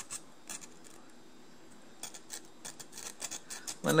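Small hand file scraping along the edge of a stamped metal motor fan blade to take off burrs, in short irregular strokes that come in clusters, more of them in the second half.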